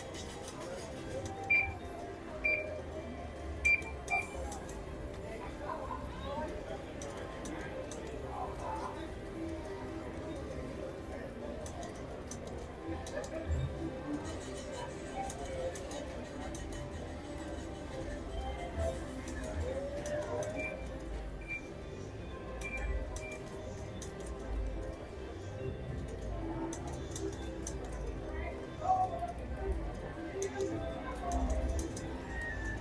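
Casino floor ambience: a steady wash of electronic slot-machine tunes and background crowd chatter, with runs of short high beeps near the start and again about two-thirds of the way through.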